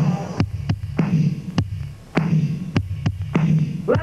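Instrumental break in a live blues-rock song: low bass notes come in short pulses under sharp drum hits, with the singing and lead guitar dropped out. The sound thins out briefly about halfway through.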